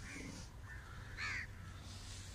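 A bird calling in the open: three short calls, the last and loudest about a second and a quarter in.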